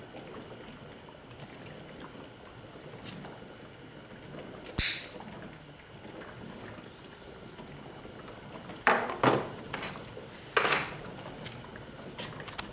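HHO generator and its water bubbler running with a faint steady bubbling hiss. About five seconds in there is one sharp click, and near the end three knocks as the metal torch is handled and laid down on the bench.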